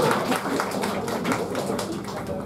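Audience applause: many hands clapping, thinning out and dying down toward the end.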